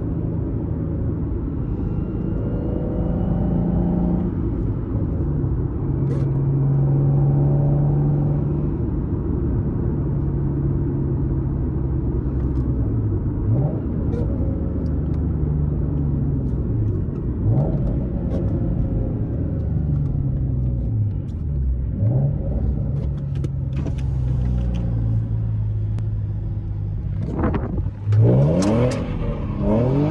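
Modded Nissan 370Z's 3.7-litre V6 with a loud aftermarket exhaust, heard from inside the cabin, running steadily in gear. The pitch dips and climbs again three times, like gear changes. Near the end the engine is revved sharply as the car is thrown into a turn.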